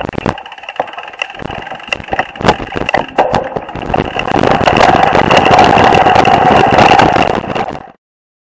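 Mountain bike riding over a dirt singletrack: clattering and rattling as the bike jolts over bumps, with tyre and wind rush that builds louder from about halfway through, then cuts off just before the end.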